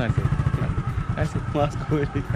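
Small motorcycle engine idling with a rapid, even putter.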